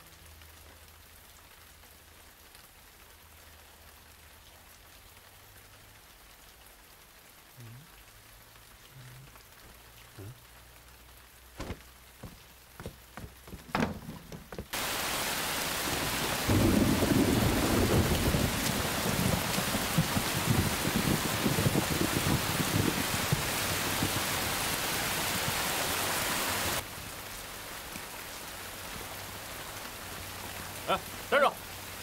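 About half of it near quiet, with a few scattered knocks, then heavy rain cuts in suddenly and loud, with thunder rumbling under the downpour. Near the end the rain drops abruptly to a lighter, steady patter.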